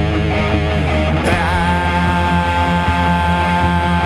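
Rock song with electric guitar over a steady bass, with a long held note coming in about a second in.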